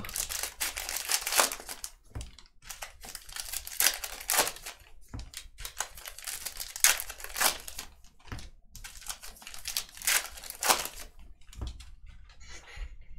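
Baseball card pack wrappers being torn open and crinkled by hand: a run of short, irregular crackling rustles.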